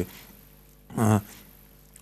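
A man's voice making one short, drawn-out hesitation sound about a second in, in a pause in his speech; the rest is quiet studio room tone.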